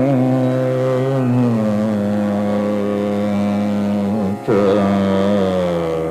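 Male Hindustani classical vocalist singing khayal in Raga Multani: an ornamented phrase that settles into a long held note, a brief break a little after four seconds, then a new wavering phrase, over a steady tanpura drone.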